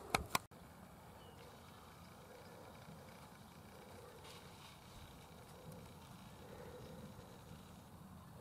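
Two short clicks near the start, then near silence: only a faint, even outdoor background.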